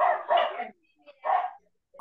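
A dog barking: a few short barks, two close together at the start and one more about a second later.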